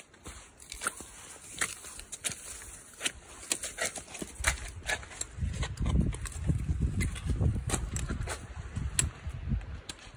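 Footsteps in wet, melting snow and mud: irregular crunches and squelches of boots on slush. A low rumble joins about halfway in.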